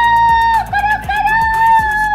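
A girl imitating a rooster's crow in a high voice: one long held note, a few quick wavering notes, then a second long held note, over background music with a steady beat.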